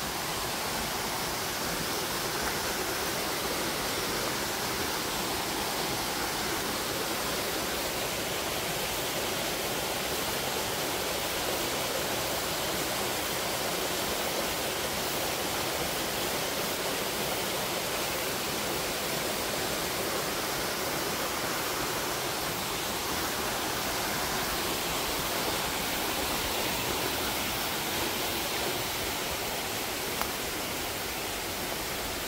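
A mountain stream rushing over rocks and small cascades: a steady, even rush of water.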